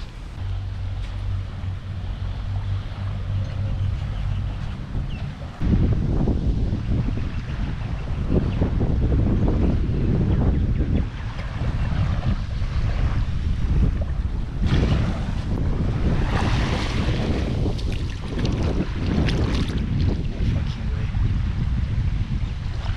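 Wind buffeting the camera's microphone, a gusty low rumble that steps up sharply about five and a half seconds in.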